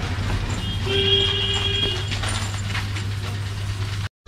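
A vehicle engine running steadily at low speed, giving a low hum, while a horn sounds for about a second about a second in.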